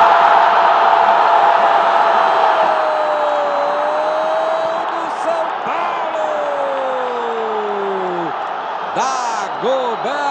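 TV football commentator's long drawn-out cry of "Gol!", held on one high note that slides downward and breaks off about eight seconds in, over steady stadium crowd noise. Short bursts of commentary follow near the end.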